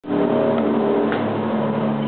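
Steady low drone of several held tones, the ambient soundtrack playing in a haunted-house attraction.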